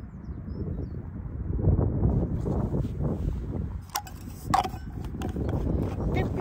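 Wind buffeting the microphone in an uneven low rumble, with two short clicks a little after four seconds in as a stainless steel flask and its cup are handled.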